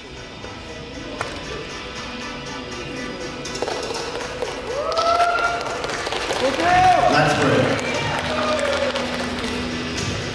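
Background music playing in a hall, with several voices shouting out from about the middle, loudest near seven seconds in.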